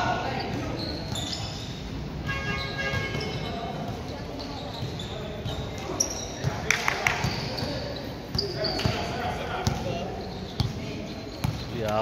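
A basketball being dribbled and bouncing on an indoor court, with several sharp knocks about halfway through, in a large echoing hall with players' voices in the background.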